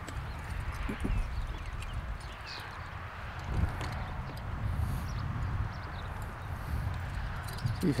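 A three-horse Percheron draft team pulling a walking plow through the field, its hooves and harness faintly heard over a steady low rumble.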